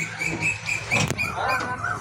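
Railway guard's whistle giving the departure signal in a string of short toots at one high pitch, about five in the first second. A knock follows, then short cries that bend in pitch.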